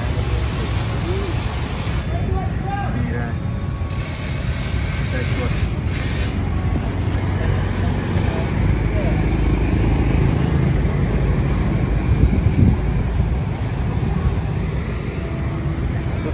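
Steady low rumble of outdoor street noise, with scattered faint voices of people nearby.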